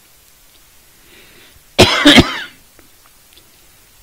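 A man gives a short, loud cough close to the microphone about two seconds in, in two quick bursts.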